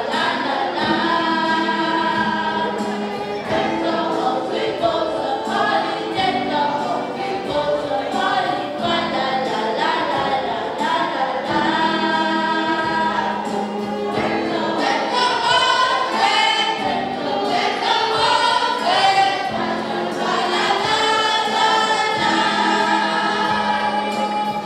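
School choir singing with a solo violin playing along, the notes held and moving continuously.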